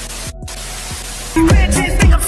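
A burst of TV-style static hiss used as a glitch transition effect, with a brief break about a third of a second in. About a second and a half in, loud dance music with a heavy bass beat cuts in.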